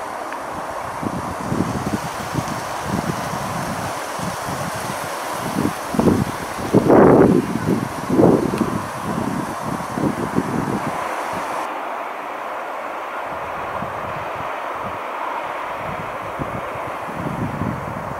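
Wind buffeting the microphone in irregular gusts, strongest about seven to eight and a half seconds in, over a steady distant hum.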